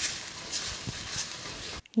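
Spoon stirring and scraping mashed eggplant bharta in a kadai: a few scrape strokes over a steady hiss. It cuts off just before the end.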